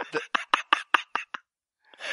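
A person laughing in short, breathy pulses, about nine of them at roughly six a second, stopping about a second and a half in.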